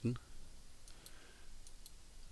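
A few faint single computer mouse clicks, one after another from about a second in, as points are placed one by one with the left mouse button over a low room hiss.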